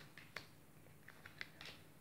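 Near silence, with a few faint, separate clicks of a tarot deck being shuffled by hand.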